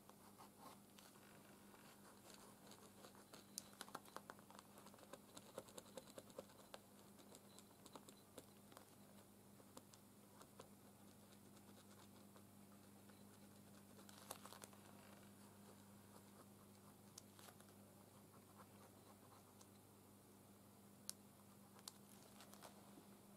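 Faint scratching and small ticks of a pen drawing on a paper journal page, thickest a few seconds in, over a steady low hum.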